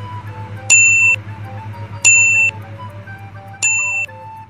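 Three electronic countdown beeps over background music, roughly a second and a half apart. Each is a sharp steady high tone lasting about half a second.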